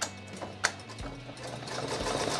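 Ricoma TC1501 embroidery machine: two sharp clicks, then about a second and a half in the machine starts stitching again, its needle running in a fast, even rhythm that builds up toward the end. It is resuming the design from a point backed up to after the thread shredded.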